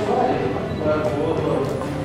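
A man's voice speaking, answering a question, with no clear non-speech sound standing out.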